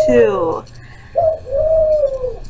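A woman's wordless vocal sounds: a falling exclamation, then after a short pause a high, held hum.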